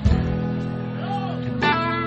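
Guitar playing slowly: a chord struck just after the start and another about a second and a half later, each left ringing, with single notes bending up and back down in between.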